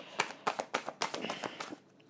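A deck of tarot cards being shuffled by hand: a quick run of light card taps and flicks, about six or seven a second.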